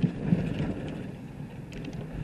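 A car's engine and tyres running with a steady low rumble, heard from inside the cabin while driving.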